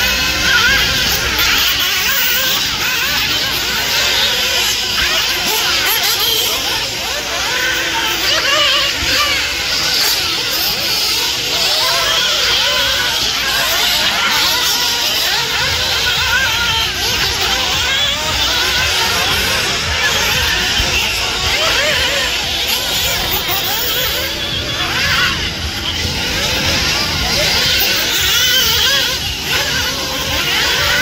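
Several RC off-road buggies racing, their motors whining up and down in pitch as they accelerate and brake, mixed with trackside public-address music and voices.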